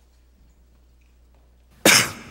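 Faint room tone, then near the end a single loud cough from a man with a cold.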